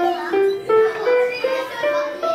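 Electronic keyboard played one note at a time, climbing a scale step by step at about three notes a second: part of a two-octave scale.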